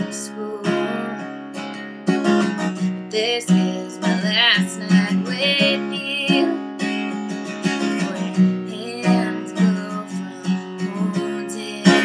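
Acoustic guitar strummed in a steady rhythm, with a woman's singing voice coming in at moments.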